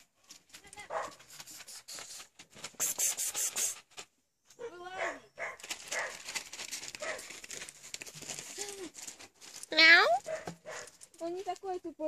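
A dog whining in two short, wavering cries; the second, about ten seconds in, is the loudest and rises in pitch. Rustling and shuffling of movement through garden plants can be heard between them.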